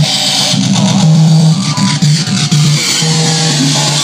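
Circuit-bent electronic toy played through a Metal Master heavy-metal distortion pedal: a distorted low note repeating in an uneven rhythm, with warbling bleeps above it and a hiss in the first second.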